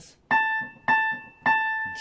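Casio CDP-130 digital piano: the same single note, A, struck three times about half a second apart, each note fading before the next.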